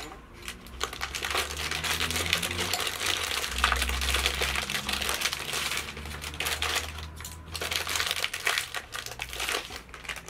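Clear plastic packaging crinkling and rustling as a stainless steel straw set is unwrapped by hand. The crackle is dense and continuous, with a brief lull about seven seconds in.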